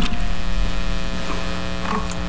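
Steady electrical mains hum: a low buzz with many overtones held at one unchanging pitch.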